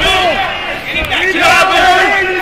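Ringside crowd at a boxing match shouting and yelling, several voices overlapping loudly with no clear words.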